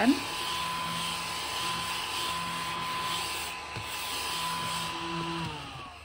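Battery-powered mini desk vacuum running with a steady high whine and hiss as it is moved over a desk to pick up eraser crumbs; near the end it is switched off and the whine falls in pitch as the motor spins down.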